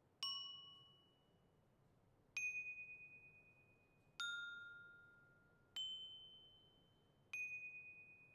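Metal pipes struck one at a time with mallets: five separate ringing notes at varying pitches, about one and a half to two seconds apart, each left to ring and fade before the next.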